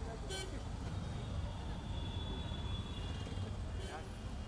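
City street traffic noise: a steady low rumble of passing vehicles, with faint distant voices.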